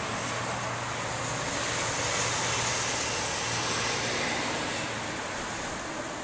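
Road traffic: a passing car's tyre noise, swelling to a peak two to three seconds in and fading again.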